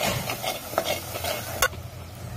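A metal spoon stirring and scraping a masala of onions, tomatoes and curry leaves frying in oil in a metal pot, with sizzling under the strokes. Near the end comes one sharp knock, after which the stirring stops.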